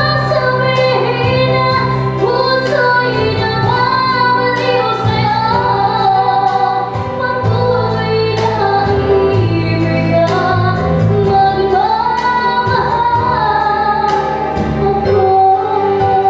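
A young girl singing solo into a microphone, her voice bending and holding long notes over instrumental accompaniment with a steady beat.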